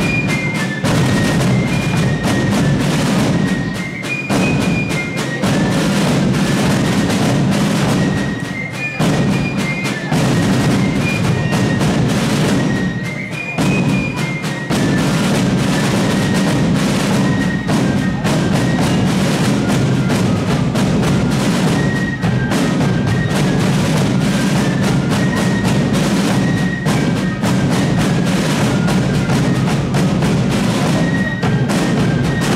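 Fife and drum corps playing a march: several fifes play a high melody in unison over rapid rope-tension snare drum rudiments. The music runs without a break, with short dips between phrases.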